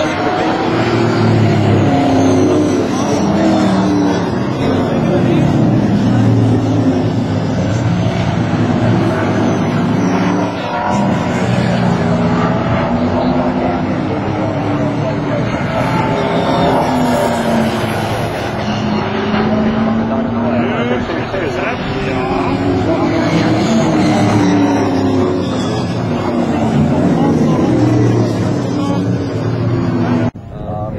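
Several stock-car-style race cars' engines running hard as they pass at racing speed, the pitch repeatedly rising and falling as they accelerate, change gear and go by.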